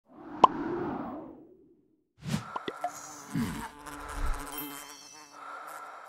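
Electronic sound effects for an animated title card. A swelling whoosh with a sharp ping about half a second in fades away. After a short gap, a busy run of clicks, a low swoop, buzzing steady tones and high blips starts suddenly and carries on to the end.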